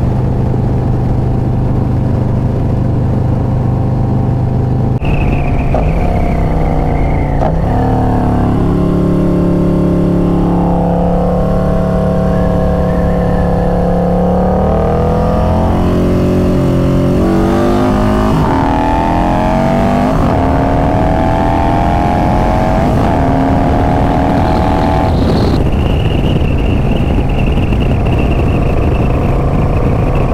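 Harley-Davidson V-twin touring motorcycle engine and exhaust heard while riding, with a rushing noise underneath. The engine note drops about five to eight seconds in as the bike slows. It climbs steadily in the middle as the bike picks up speed, then steps down sharply a few seconds before the end.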